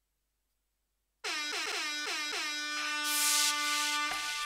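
DJ air-horn sound effect starting about a second in: several quick blasts, each dipping in pitch as it begins, the last one held, with a burst of hiss near the end.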